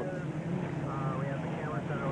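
Unlimited hydroplane's Rolls-Royce Merlin V12 engine running at racing speed, a steady drone, heard through the TV broadcast audio.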